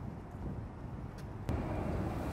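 Outdoor city street ambience: a steady low rumble of distant traffic with wind on the microphone, turning suddenly louder and brighter about one and a half seconds in.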